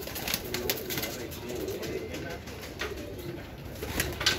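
Dab wali domestic pigeons cooing, low throaty warbling calls overlapping one another, with a few sharp clicks in between.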